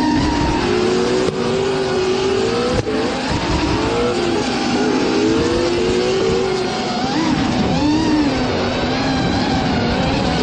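Two drift cars running in tandem, one of them a 5.3-litre LS V8. The engines rev up and fall back over and over, over the rushing noise of sliding tyres.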